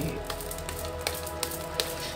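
A deck of tarot cards shuffled by hand: a quick, uneven patter of soft card clicks and rustling, over faint background music.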